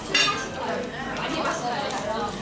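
A sharp, ringing clink of a beer glass just after the start as it is lifted from the table, over a steady background murmur of voices in a restaurant dining room.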